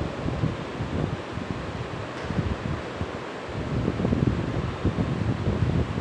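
Uneven low rumbling of moving air buffeting the microphone, rising and falling without any clear rhythm.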